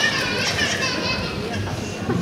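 A high-pitched voice wavering up and down in the first second, then fading, over a steady murmur of audience noise.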